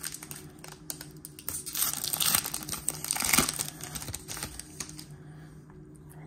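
Trading-card pack wrapper crinkling as it is handled and opened by hand, with many quick small clicks. The rustling is loudest between about two and three and a half seconds in.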